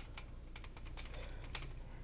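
Light, irregular plastic clicks from a Transformers Landmine action figure as its parts are handled and moved during transformation.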